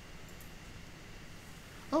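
Quiet room tone with a faint steady low hum, then a man says "Oh" right at the end.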